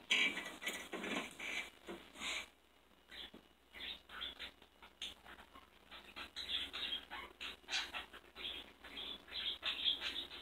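Two pet budgerigars (parakeets) chattering in short, irregular chirps, with a brief lull about three seconds in.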